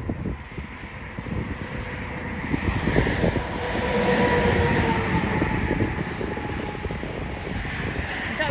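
A vehicle passing on a nearby road: a rumble with a faint hum that builds to its loudest about halfway through, dropping slightly in pitch as it goes by, then fades, over wind buffeting the microphone.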